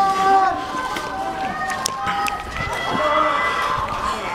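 Several men's voices calling out long, drawn-out cries of 'Allahu Akbar', overlapping at different pitches.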